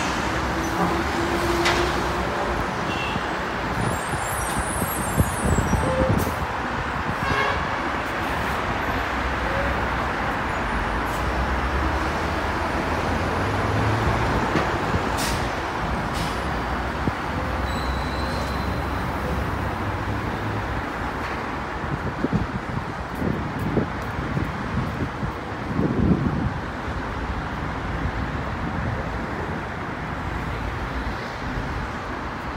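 Steady city road traffic from a busy multi-lane road: cars and buses passing continuously, with no single event standing out.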